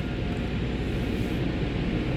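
Steady rush of car wash water sprays and machinery, heard muffled from inside a car's cabin, over a low rumble.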